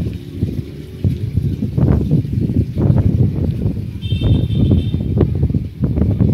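Wind buffeting the microphone in uneven gusts, with a brief faint high tone about four seconds in.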